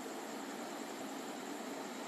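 Steady faint hiss of room tone.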